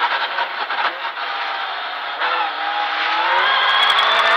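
Rally car engine heard from inside the cabin over gravel noise under the car: it eases off in the first half, then revs up in second gear, its pitch rising as the car accelerates out of a tight corner.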